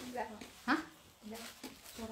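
A woman's voice in short spoken fragments, including a questioning "hah?" about a second in.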